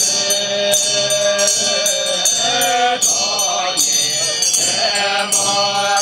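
A group of Buddhist monks chanting in unison in low voices, with sharp, irregular strokes and ringing from their long-handled ritual drums and handbells.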